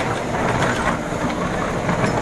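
JCB backhoe loader's diesel engine running steadily as its bucket digs into broken asphalt and rubble, with scattered short knocks and scrapes of rock.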